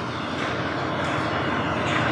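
Steady rushing background noise of the meeting room, even and without any distinct event.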